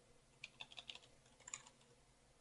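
Faint computer keyboard keystrokes: a few soft key clicks between about half a second and one second in, and another one or two near one and a half seconds, as the text in a name field is cleared.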